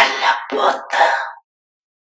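A woman clearing her throat close into a handheld microphone: three short bursts in about a second and a half, then the sound cuts off.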